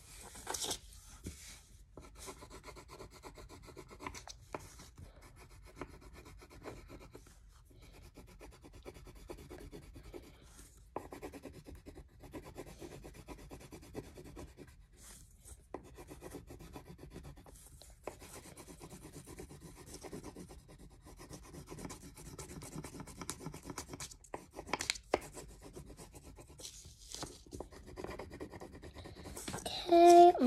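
Wax crayon rubbing back and forth on paper in quick, continuous strokes as an area is colored in.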